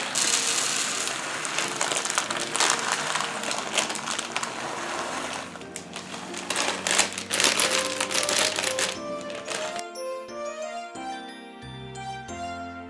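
Dry lentils poured from a plastic bag onto a countertop: a dense rattle of small hard seeds scattering, with the bag crinkling, that stops about ten seconds in. Background music plays throughout and carries on alone after that.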